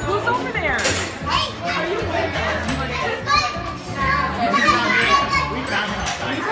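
Children's voices shouting and chattering in a busy dining room, with music playing underneath.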